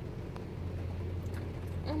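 Steady low hum of a car engine idling, heard from inside the cabin. A woman's voice breaks in right at the end.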